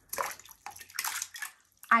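Water splashing and sloshing in a shallow plastic tub as a handful of leeches is shaken off the hands into it, in two short bursts.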